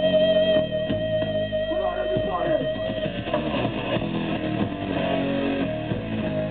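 Hardcore punk band playing live through a PA, electric guitar to the fore, with a high steady note held over the first half.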